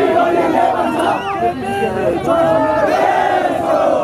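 Crowd of protesters shouting, many raised voices overlapping, with long held shouts near the end.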